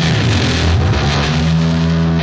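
Loud rock music: heavily distorted electric guitar in an instrumental passage, with notes sliding in pitch.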